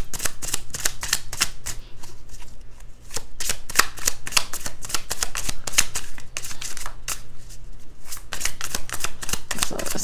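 Deck of tarot cards being shuffled in the hands: a quick, uneven run of papery card slaps and flicks, several a second, with a short lull about two to three seconds in.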